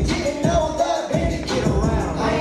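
Loud hip hop music from a live show: a beat with deep bass hits that drop in pitch, under a melodic sung vocal line.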